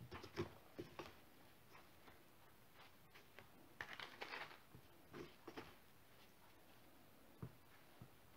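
Near silence with a few faint rustles and light taps, a small cluster of them about four seconds in, as starch-dusted cubes of Turkish delight are handled and set into a parchment-lined box.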